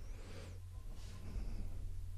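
Quiet microphone pause: a steady low electrical hum with two soft breaths close to the microphone, one at the start and one about a second in.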